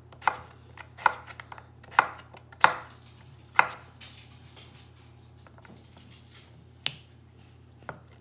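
Chef's knife chopping a raw russet potato on a wooden cutting board: five sharp knocks of the blade striking the board, roughly one a second. After a pause, two more knocks come near the end.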